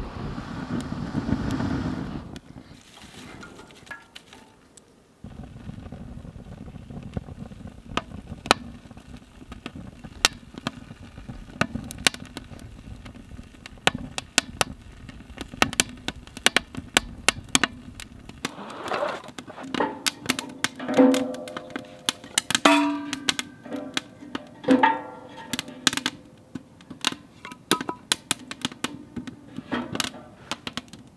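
Kindling fire crackling with many sharp pops as split wood and dry grass tinder catch alight. A louder rushing sound fills the first two seconds.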